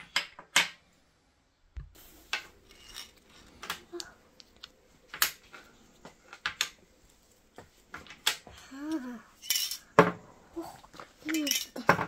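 Scattered sharp clicks and clinks, with a young child's voice in the background several times in the second half.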